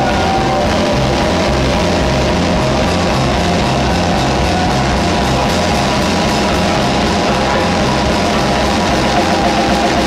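Live rock band playing loud: electric guitar and drum kit driving a steady beat, with no singing.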